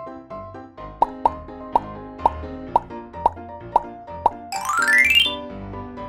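Light children's background music with a run of eight short, bright cartoon sound effects about twice a second, then a quick rising whistle-like glide in pitch about five seconds in.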